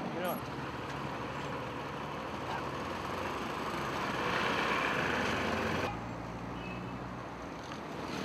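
Street traffic noise with vehicles going by, swelling briefly before an abrupt change about six seconds in to a steady low engine hum.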